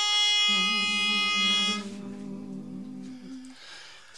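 A pitch pipe sounds one steady reedy note for the barbershop quartet's starting pitch, cutting off a little under two seconds in. Men's voices hum their starting chord under it from about half a second in, holding it until shortly before the song begins.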